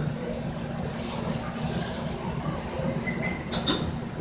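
Steady low rumble of shop background noise, with a faint high beep a little over three seconds in, followed at once by a sharp clack.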